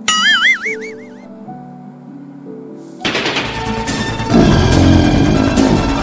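Background music with edited-in sound effects: a whistle-like tone that wobbles up and down in pitch for about a second at the start, then from about three seconds in a loud, dense burst of rapid rattling noise over the music.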